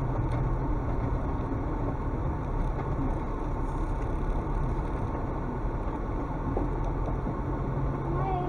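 Car engine and tyre noise heard from inside the cabin while driving along an unpaved forest track: a steady, even low rumble with no distinct knocks or changes.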